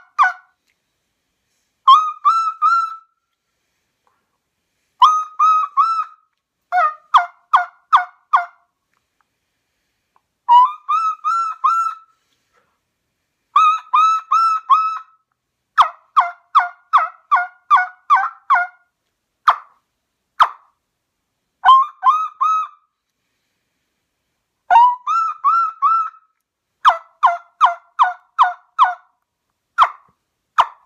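Trumpet-style turkey call made of coconut palm wood, played by mouth in repeated runs of yelps. Each run is about four to eight short notes, some stepping down in pitch, with brief pauses between runs and a couple of single short notes around twenty seconds in.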